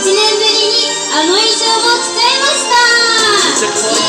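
Female voices singing a Japanese idol-pop duet live over backing music with a steady beat.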